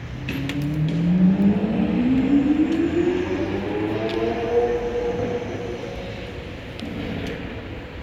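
Lamborghini Aventador S's V12 engine accelerating away, its pitch climbing steadily for about four seconds, then levelling off and fading.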